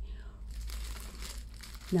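Crinkling of a tea bag and packaging being handled, starting about half a second in.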